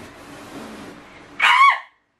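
A woman's short, high-pitched squeal about a second and a half in, a startled reaction on touching an unseen object inside a box; it cuts off suddenly. Before it, only faint room hiss.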